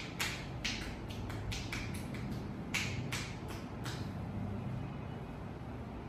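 Massage hands working over a leg: a quick run of short, hissy rubbing or patting strokes on skin and clothing, about three a second, stopping about four seconds in. A low steady hum underneath.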